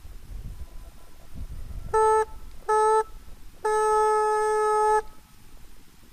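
A hunting horn blown as a signal during a driven hunt: two short blasts and then one longer blast, all on the same steady note.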